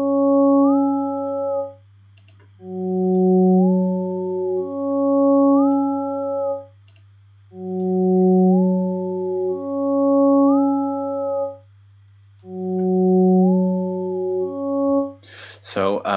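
Logic Pro X Alchemy additive synth patch looping a two-note phrase, a low note then a higher one, that repeats about every five seconds with a short gap between repeats. Partway through each note its upper harmonics glide up in pitch, driven by a pitch envelope set on single partials. The phrase is heard three times over, and the fourth is cut short near the end.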